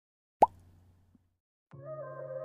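A single short plop sound effect with a quick rising pitch, about half a second in. Background music starts near the end.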